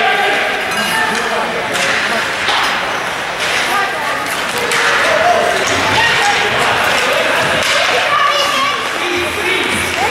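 Spectators' voices and chatter filling a hockey arena, with a few sharp clacks of hockey sticks and puck on the ice.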